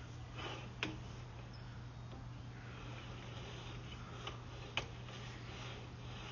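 Sewer inspection camera's push cable being reeled back through the line: a faint steady low hum with a few sharp clicks, two of them clear, about a second in and near the end.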